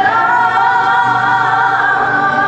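Women singing live into microphones, holding long sustained notes with slight vibrato.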